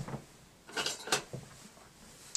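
A metal ruler being fetched and handled: a small click at the start, then a couple of short, light clatters about a second in.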